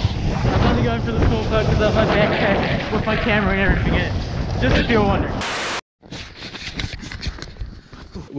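Snowboard sliding over snow with wind buffeting the action-camera microphone and indistinct voices over it. About five and a half seconds in there is a short burst of hiss and a brief dropout, then quieter wind noise with more indistinct voices.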